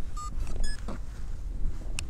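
A steady low rumble of wind or handling on a moving outdoor microphone. In the first second come two short, high-pitched beeps, the second higher than the first.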